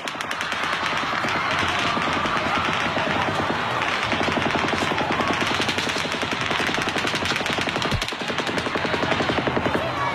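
Rapid, sustained strings of gunshots, many a second, recorded on a cell phone, with a constant wash of noise beneath them. The firing dips briefly about eight seconds in.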